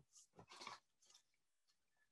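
Near silence, with a few faint short clicks in the first second.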